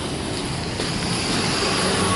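Road traffic: cars and pickup trucks passing close by on a wet road, a steady run of engine and tyre noise that swells slightly toward the end.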